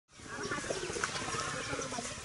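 Faint outdoor ambience fading in: a steady hiss of background noise with a few faint, brief sounds over it.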